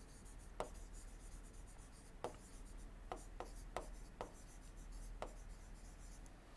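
Faint taps and scratches of a stylus writing on a tablet screen: about seven light, irregular ticks over a faint low hum.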